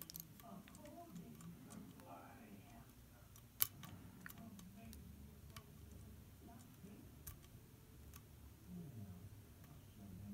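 Faint, sparse clicks of a lock pick working the pins of an E² round pin-tumbler cylinder held under tension in a deep false set, with one sharper click about three and a half seconds in. Faint background voices.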